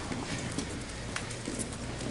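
Wrestlers' shoes scuffing and tapping on the mat as they tie up, a few light taps over the steady murmur of a large room.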